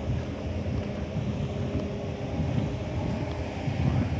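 Wind buffeting the phone's microphone: a steady low rumble with no other clear sound.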